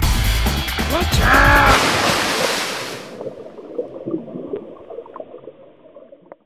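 Music with a steady beat and a brief voice call, then a loud rush of water about two seconds in as the phone is plunged under the pool surface. After that the sound is faint and muffled underwater.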